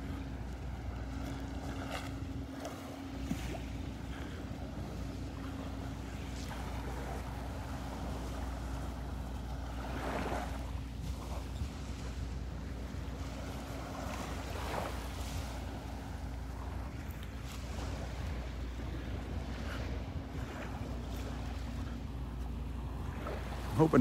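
Quiet beach ambience: a steady low rumble of wind on the microphone and small waves lapping at the water's edge, with a faint steady hum underneath.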